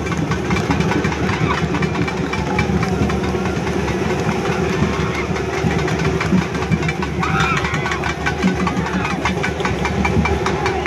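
An engine running steadily throughout, with a rapid, even knock, under the chatter of a crowd.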